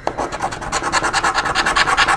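Scratch-off lottery ticket being scratched by hand: quick back-and-forth scraping strokes on the latex coating, about a dozen a second, starting at once and running steadily.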